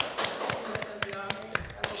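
A few people clapping by hand for an arriving guest, the irregular claps thinning out toward the end, with voices under them.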